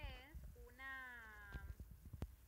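Faint high-pitched calls that are not words: a short falling call at the very start, then one long, slowly falling call lasting about a second.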